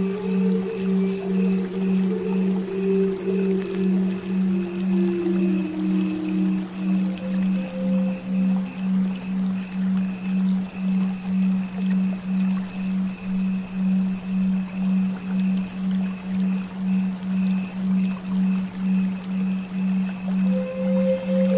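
A steady low binaural-beat tone pulsing about twice a second, with a flute playing slow notes that step downward through the first half and then fade out, over a faint hiss of flowing water.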